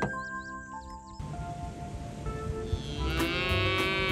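A young calf mooing once, a long call starting near the end, over background music.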